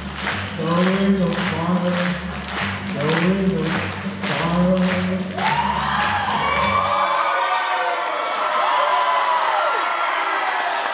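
Music with a steady beat, a bass line and a melody. About five seconds in, an audience breaks into loud cheering and whooping over it; the music stops about two seconds later and the cheering and applause carry on.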